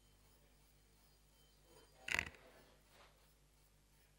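A quiet room with one brief knock or rustle near the microphone about two seconds in, followed by a much fainter one about a second later.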